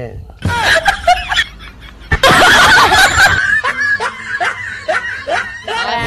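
People laughing, with a loud harsh burst of noise about two seconds in that lasts about a second, then a run of short laughing bursts.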